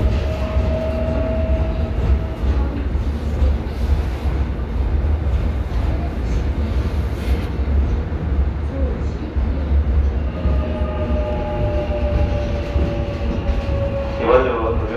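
Seoul Subway Line 1 electric train running through a tunnel, heard from inside the car: a deep, steady rumble. A thin whine sounds for the first couple of seconds and returns over the last few seconds, falling slightly in pitch.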